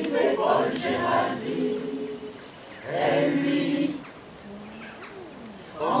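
Mixed-voice choir singing unaccompanied in French. The phrases drop to quieter passages twice, and the full choir comes back in loudly at the very end.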